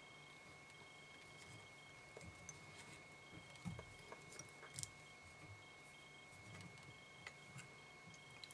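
Near silence: room tone with a faint steady high-pitched tone, and a few faint small clicks around the middle as fly-tying thread and materials are handled at the vise.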